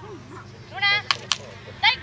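A short high-pitched call a little under a second in, followed by two sharp cracks about a fifth of a second apart.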